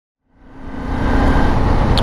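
Motorcycle riding noise fading in from silence over about the first second, then steady: a rush of wind on the helmet camera over the running note of a Honda CBR250R's single-cylinder engine.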